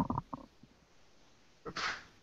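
A man's speech cut into short clipped fragments by a breaking-up video-call connection, with dropouts between, then a short breath-like rush of noise near the end.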